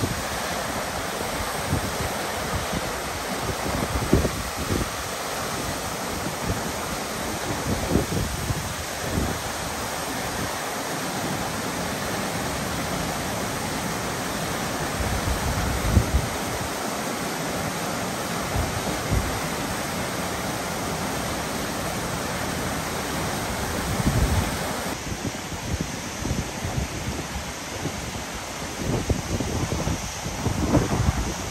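Dog Creek Falls, a 33-foot horsetail waterfall, rushing steadily, with a few brief low buffets of wind on the microphone.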